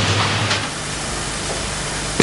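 Steady hissing background noise that drops slightly about half a second in.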